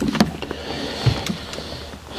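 Rustling handling noise close to a lectern microphone, with a few light clicks and one low knock about a second in, as a book and its pages are moved about on the lectern.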